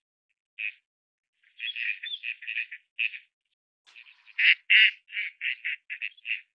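Gadwall ducks calling: short quacks, some single and some in quick runs, the loudest run about four and a half seconds in and fading over the following second.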